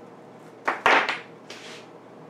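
Stiff woven trampoline cloth rustling as it is shifted and smoothed across a table, with a dull bump in the loudest part about a second in, then a shorter, softer rustle.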